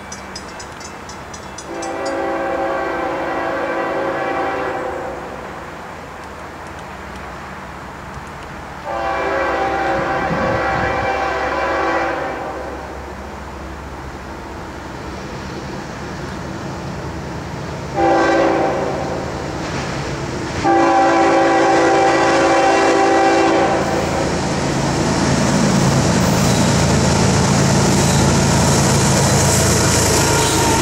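Freight locomotive air horn, a chord of several tones, sounding four blasts in the long, long, short, long pattern of the standard grade-crossing signal. From about three-quarters of the way through, the rumble and hiss of the approaching CSX GE ES44AH-led diesel freight train grows steadily louder as the locomotives draw near.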